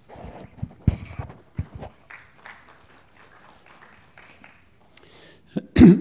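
Footsteps on a wooden stage floor, a few heavy steps in the first two seconds and then fainter ones. Near the end comes a loud thump on the microphone as a man starts speaking.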